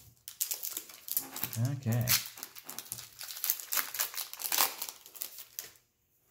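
Foil Pokémon booster pack wrapper crinkling and crackling as it is handled and torn open, a dense irregular rustle that stops just before the end.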